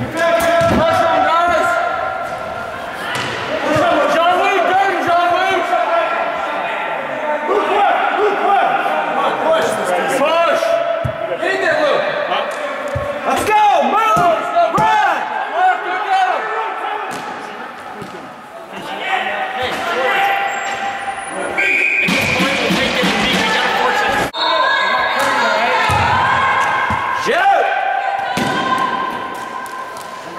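Broomball play in an echoing indoor rink: players shouting and calling to each other, with scattered sharp knocks and thuds from brooms hitting the ball and players meeting the boards.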